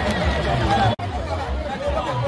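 Crowd of people talking over one another, with a sudden brief dropout about a second in.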